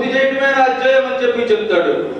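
A man giving a speech into a handheld microphone.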